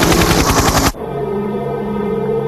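A burst of rapid machine-gun fire, cut off suddenly just under a second in, followed by sustained, steady music chords.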